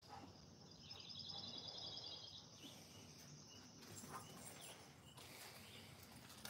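Near silence, with a faint bird trill: a rapid run of repeated high notes lasting about two and a half seconds, stopping partway through.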